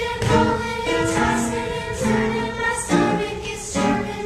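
A group of young voices singing a song from a stage musical, with instrumental accompaniment and a steady beat.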